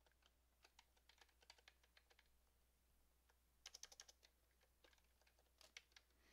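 Faint computer keyboard keystrokes as code is typed: scattered single taps, then a quick run of several keys about two-thirds of the way through, and a few more taps near the end.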